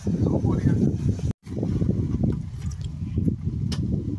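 Low rumble of wind buffeting a phone's microphone, with the sound dropping out for a moment just over a second in.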